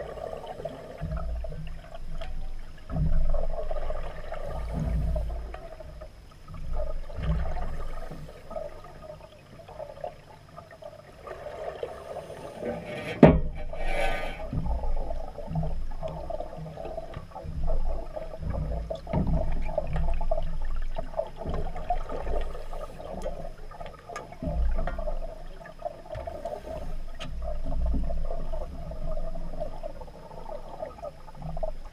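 Underwater sound through a GoPro housing: a scuba diver's regulator exhaust bubbles gurgling in repeated surges every couple of seconds as he breathes out. One sharp knock about halfway through.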